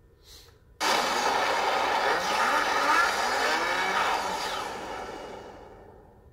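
A car engine revving with tyre noise, its pitch rising and falling. It starts abruptly about a second in and fades out over the last two seconds.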